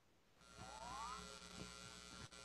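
Faint, steady electrical mains hum on the audio line. It starts about half a second in, after a moment of dead silence, and a brief faint rising tone comes soon after it starts.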